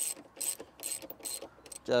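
Ratchet wrench with a socket and extension clicking in four short bursts about half a second apart as it is swung back and forth, loosening the handlebar bolts.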